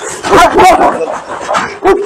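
Two large Turkish shepherd dogs barking aggressively at each other across a fence, one lunging on a leash. There is a burst of barking about half a second in and a sharp bark just before the end.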